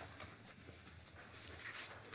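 Faint rustling of papers and a pencil scratching on paper close to a desk microphone, with a few soft taps over a low steady room hum.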